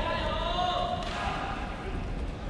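A single voice calling out for about a second, over the steady low background noise of a large arena crowd.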